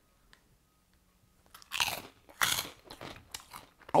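A puffed corn snack, a Willards Corn Curl, bitten and chewed with a crisp crunch: two loud crunches about one and a half seconds in, then smaller chewing crunches.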